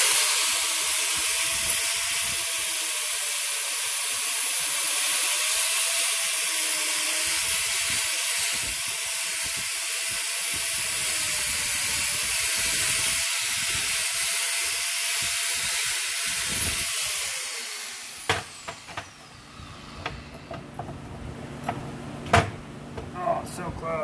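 Angle grinder with a flap disc grinding the end of a steel tube, its motor pitch wavering as the load changes. About 17 seconds in it winds down and stops, followed by scattered knocks of the steel tube being handled on a steel table.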